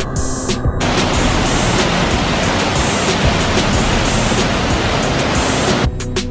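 Loud, steady rush of a waterfall, starting suddenly about a second in and cutting off abruptly just before the end. Background music plays before it starts and again right after it stops.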